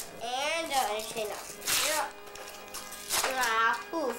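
A young child's high voice in two short, unclear utterances, with music playing quietly in the background.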